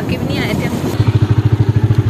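A two-wheeler's small engine idling close by, with a quick, even pulse in the second half. It follows a moment of speech over riding and wind noise.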